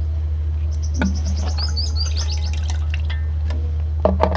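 Birds chirping in a quick series of high notes during the first half, over a steady low hum, with a single light click about a second in.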